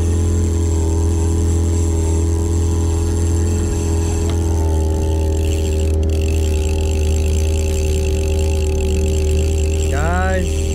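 Outboard motor running steadily at high trolling speed, its note shifting slightly about halfway through.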